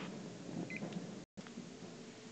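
Two short, faint beeps from a handheld digital kitchen timer as it is set, over low room hiss.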